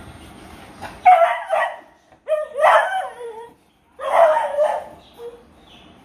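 A dog barking in three short, loud bouts about a second apart while the dogs play-fight.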